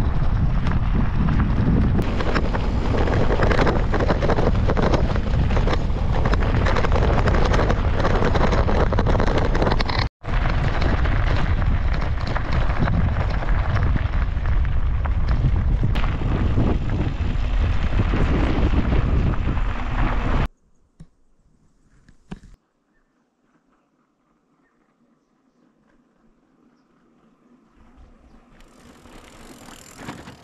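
Loud wind rushing over the microphone and bicycle tyres rolling on a gravel road while riding. It breaks off for an instant about a third of the way through, then stops abruptly about two-thirds through, leaving near silence.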